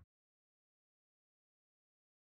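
Silence: the sound track is cut to nothing.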